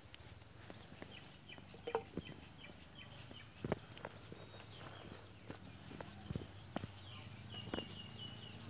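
Faint, high chirps from a small bird, repeated at an even pace of about three a second, with a few sharp clicks scattered through.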